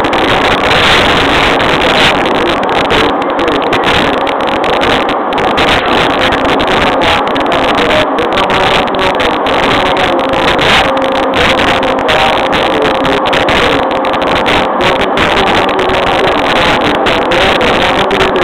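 Running noise inside a JR East E231 series electric train, heard from a seat in a motor car: a loud, steady rumble of wheels on rail at speed with a faint steady hum from the traction motors.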